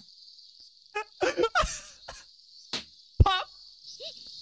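Cicadas chirping in a steady high-pitched drone, the anime's summer sound effect. A single sharp pop about three seconds in is a party popper going off.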